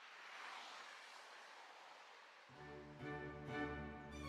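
Faint traffic noise from the road swells and fades, then background music with bowed strings starts about two and a half seconds in and grows louder.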